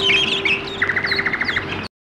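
Songbirds chirping and calling, with a rapid trill about a second in, over a steady low tone. All of it cuts off suddenly just before the end.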